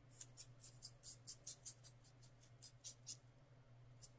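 Fingers rubbing and fluffing the hair of a synthetic lace-front wig: a faint, quick run of short dry rustles, several a second, thinning out after about two seconds.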